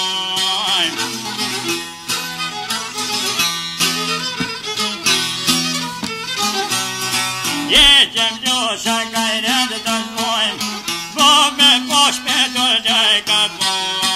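Albanian folk music: a plucked long-necked lute in quick repeated strokes over steady low held notes, with a high, wavering, ornamented melody line on top.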